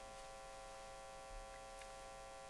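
Faint, steady electrical hum made of several constant tones over a light hiss: room tone.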